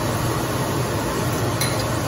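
Vegetables and chilies sizzling steadily in a hot pot on the stove, with a light click near the end.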